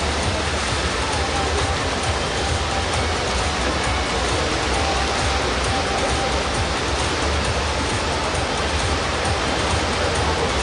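Steady wash of noise in an indoor swimming-pool hall during a butterfly race, with no single sound standing out.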